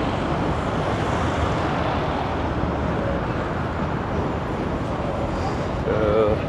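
Steady city traffic noise: a continuous rumble and hiss of passing cars at a busy road junction.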